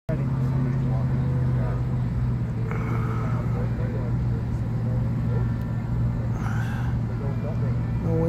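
A steady, low engine drone that holds one pitch throughout, with people talking in the background.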